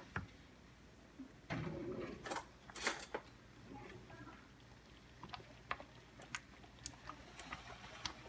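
Quiet kitchen handling sounds: a wooden spoon stirring thick simmering red chili in a skillet and a metal spoon being picked up, with scattered small clicks and ticks and a cluster of sharper clicks about three seconds in. A brief low cooing sound comes about one and a half seconds in.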